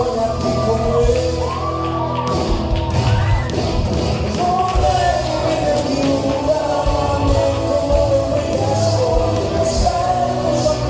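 Italian pop song with a sung lead vocal over a band backing with a steady beat.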